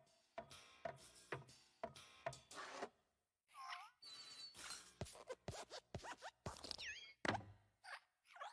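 Cartoon sound effects of the Pixar Luxo Jr. desk lamp hopping: a quick series of small thumps and springy boings about two a second, with creaky squeaks from the lamp's joints, ending with a harder thump near the end as it stamps the letter I flat.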